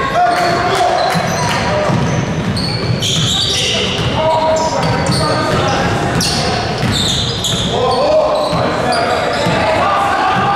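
Basketball game sounds in a gym: a ball bouncing on the hardwood floor, sneakers squeaking, and players' and spectators' indistinct shouts, all echoing in the hall.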